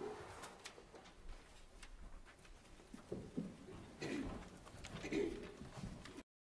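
Quiet movement of a small church choir getting to its feet and picking up hymnals: shuffling, a few soft knocks and faint low murmurs, with a few louder low sounds in the second half.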